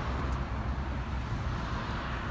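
Turbocharged Buick V6 engine of a Grand National idling steadily, with an even low hum and no revving.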